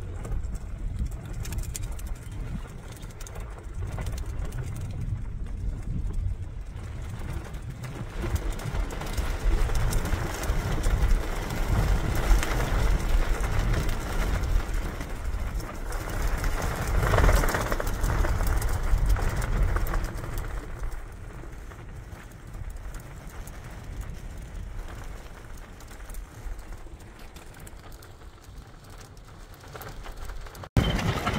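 Strong gusting wind buffeting the microphone, a low rumble that builds to its strongest in the middle and eases off toward the end.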